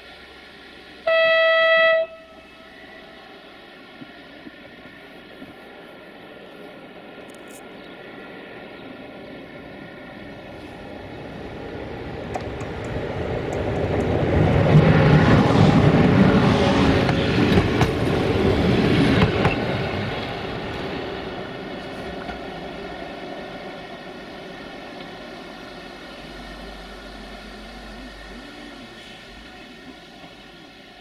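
An Electroputere-built electric locomotive sounds one steady horn blast of about a second, about a second in. It then runs past close by with its passenger train, the rolling noise swelling to a peak in the middle and fading away.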